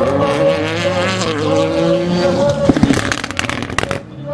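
Corvette drift car's V8 held at high revs while sliding sideways and spinning its rear tyres, the pitch wavering as the throttle is worked. Near the end a quick run of sharp crackles cuts through as the revs drop.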